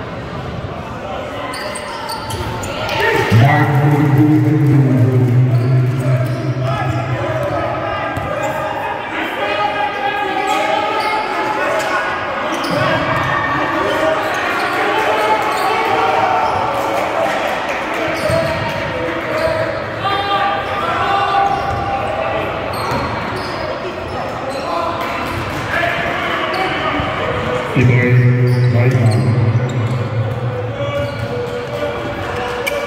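Basketball being dribbled on a gym floor during play, with players' voices calling out across the hall. A loud low steady drone comes in about three seconds in and runs several seconds, and starts again near the end.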